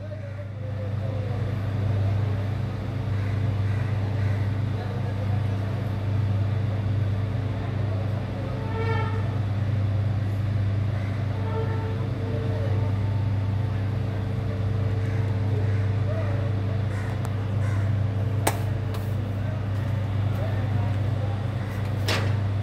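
A steady low mechanical hum, like an engine running, with faint voices and a short pitched call about 9 s in. A sharp knock comes near the end.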